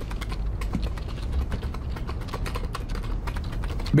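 Continuous rapid typing on a computer keyboard: a dense, irregular stream of key clicks over a low steady hum.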